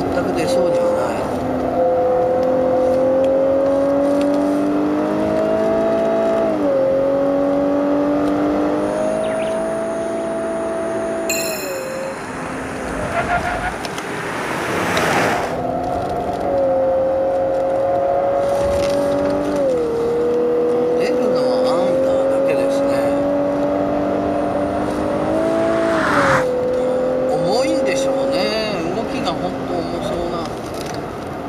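Lexus LC500h's 3.5-litre V6, heard from inside the cabin under full-throttle circuit driving: the engine note climbs steadily with revs and drops sharply at each gear change, about four times. A short rush of noise comes around the middle and again just before the last shift.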